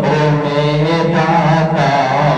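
A man's voice singing Urdu verse into a microphone in a slow, melodic chant, holding long, slightly wavering notes.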